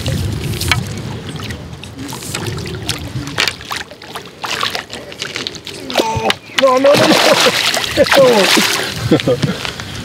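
A hooked carp thrashing and splashing at the surface close to the bank as it is played towards and into a landing net, many short irregular splashes. In the second half a man's wordless voice sounds join in.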